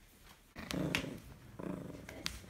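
Small dog growling during play, in two rough bursts about a second apart, with a couple of sharp clicks over the first.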